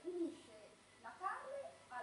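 Speech: a voice talking, in short phrases with pauses.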